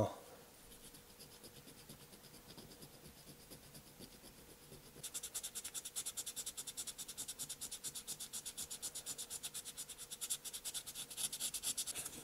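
Light scraping of a small file on the zinc diecast car body for the first few seconds. Then, from about five seconds in, a sanding sponge rubs rapidly back and forth over the metal in quick, even strokes as the cast-in windshield wipers are worn away.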